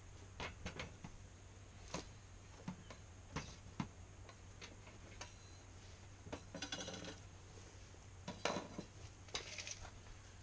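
Faint, scattered clicks and knocks of a PVC pipe and a hacksaw being handled on a wooden board, with a louder knock a little past the middle. Near the end, a rattling run of ticks as a steel tape measure is pulled out.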